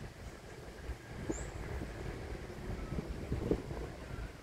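Low, steady outdoor background rumble, with a few faint soft ticks and a brief high chirp just over a second in.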